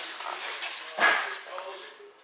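Small dog scrabbling about on a hardwood floor as she spins chasing her tail, with a faint whimper about a second in.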